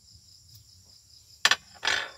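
Crickets trilling steadily in the background. About a second and a half in there is one sharp knock, then a short scuffing noise near the end, as a gloved hand handles things on the bench.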